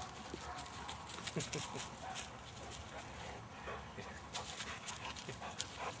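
Dogs moving about on grass and being handled close by: scattered rustles and clicks, with a few faint short whines.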